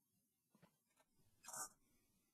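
Near silence, with one faint, short sound about one and a half seconds in.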